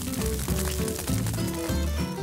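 Instrumental background music with held notes over a steady bass.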